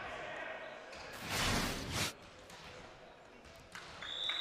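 Gymnasium room noise, with a brief rush of noise a little over a second in that lasts under a second, then dies back down.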